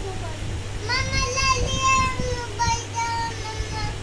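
A young girl's voice singing a drawn-out phrase in long held notes, starting about a second in.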